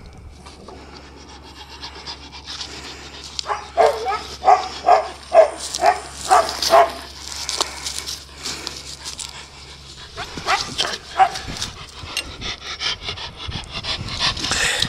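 Dog panting in quick, rhythmic breaths, about two to three a second, in a spell starting a few seconds in and a shorter one near the end.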